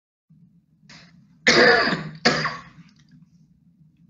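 A man coughing twice in quick succession, the second cough trailing off, over a low steady hum.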